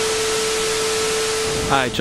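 Steady rushing hiss with one constant humming tone through it: the running noise of jet aircraft at an airport. A man's voice begins near the end.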